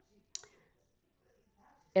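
A single snip of sewing scissors clipping the corner of a pillow cover's seam allowance so it will fold better: one short, sharp click about a third of a second in.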